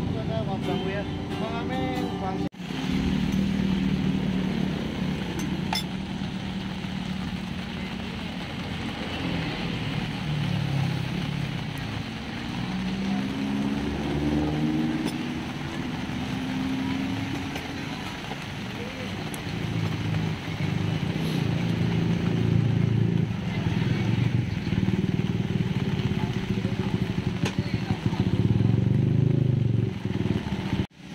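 Motor traffic with motorcycles running steadily and indistinct voices mixed in. About halfway through, an engine note rises in pitch.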